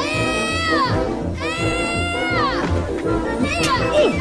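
Film score music with children's long drawn-out yells over it: two cries of about a second each, each rising, held, then falling away, with shorter calls near the end.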